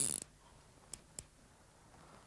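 A fly reel's click-pawl ratchet buzzing as the spool turns, cutting off about a quarter second in. Then it is quiet except for two short faint clicks about a second in.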